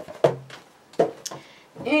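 Two short knocks about three quarters of a second apart, from a large binder being handled, with quiet between them; a woman's voice begins again near the end.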